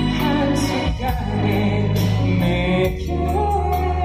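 A man singing a ballad live through a PA over a recorded backing track with a regular drum beat, wavering on a note early on and holding a long note in the second half.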